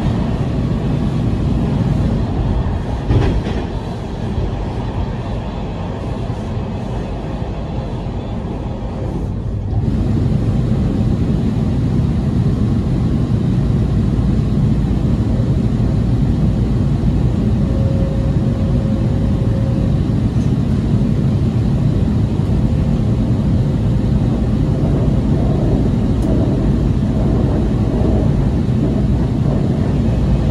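In-car ride noise of a WMATA Breda 2000 Series Metrorail car under way: a steady rumble of wheels on rail. It grows louder about ten seconds in, and later a faint steady whine comes and goes.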